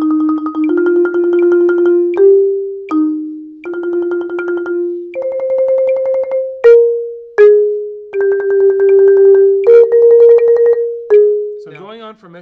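Marimba played with two yarn mallets: a slow phrase of rolled notes, each held by fast alternating strokes, linked by a few single struck notes. The phrase stops just before the end.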